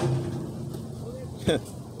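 Low, steady rumble of road traffic, with a short voice sound from the man about one and a half seconds in.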